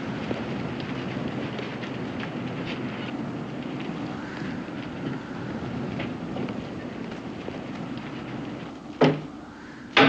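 Steady rushing background noise with a few faint clicks. About nine seconds in comes a single loud thud with a short low ring after it.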